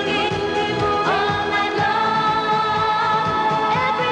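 Female pop vocals singing over a disco-pop backing track, holding one long note with vibrato from about a second in.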